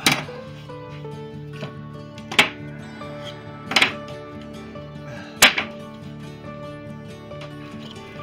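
Four sharp clacks spread over about five seconds as quick-release bar clamps are released from a glued wooden spar and set down on the bench, over background music with long held notes.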